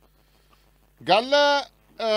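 A man's voice making a single drawn-out vowel sound, starting about a second in, rising at its onset and then held for under a second.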